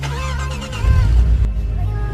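A car engine revving as the car pulls away, with a low surge about a second in, under background music with heavy bass.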